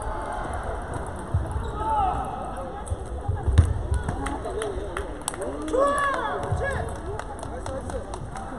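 Busy table tennis hall: background voices calling out, with scattered sharp clicks of celluloid balls striking tables and paddles at the surrounding tables.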